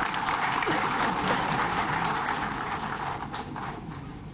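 Audience applause: many hands clapping at once, dense at first and thinning out near the end.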